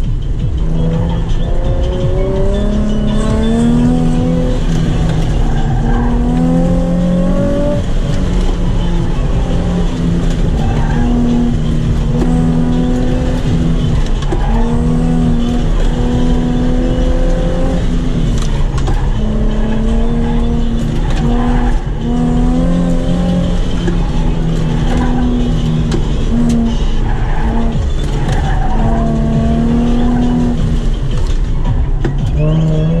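Nissan 350Z's V6 engine heard from inside the cabin while driven hard, its pitch climbing under acceleration and dropping off again, over and over, over road and wind noise.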